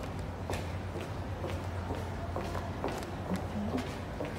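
Footsteps walking at a steady pace, about two steps a second, on the floor of the Kanmon undersea pedestrian tunnel. Under them runs a steady low hum of car traffic in the road tunnel above.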